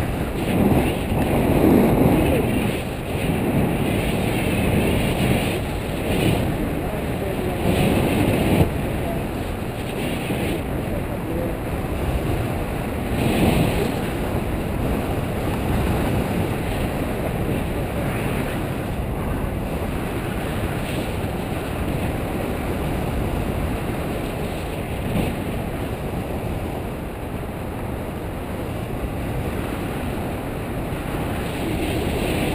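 Wind rushing over the camera's microphone from the paraglider's airspeed: a steady low rumble that swells into louder gusts a couple of times, around two seconds in and again near the middle.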